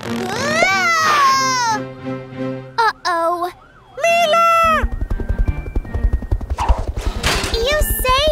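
Cartoon soundtrack: music with a young girl's wordless, sliding exclamations, then from about five seconds in a fast, steady beat with two short rushing bursts of noise.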